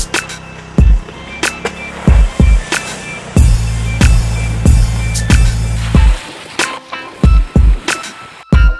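Hip-hop backing track with no rapping: hard kick-drum hits and a deep bass note held through the middle.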